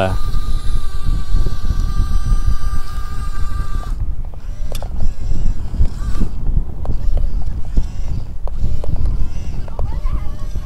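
The electric motor of a Yigong YG258C RC excavator whining steadily as it drives the boom and arm, cutting off suddenly about four seconds in. After that come a few faint clicks, over a steady low rumble.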